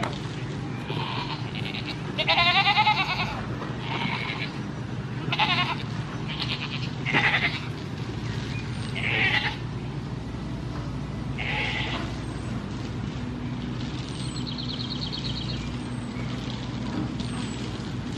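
Goats bleating several times, the loudest a long wavering bleat about two seconds in, followed by shorter calls spaced a second or two apart. A steady low hum runs underneath.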